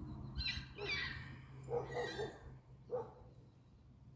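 A few short animal calls: a higher-pitched cluster about half a second in, another cluster at about two seconds, and a single brief call near three seconds.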